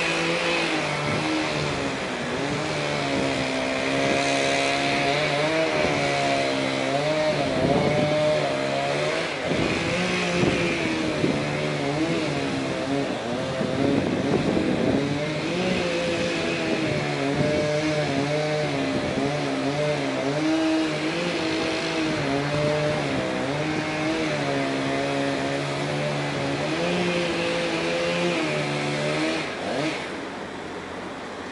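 A small engine runs for the whole stretch, its speed and pitch rising and falling unevenly.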